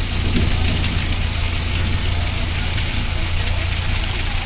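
Steady rain falling on a wet, muddy street, an even hiss of drops on the ground, with a constant low rumble underneath.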